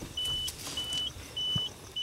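Car's electronic warning chime inside the cabin: a single high-pitched beep repeating evenly, three beeps a little over half a second apart.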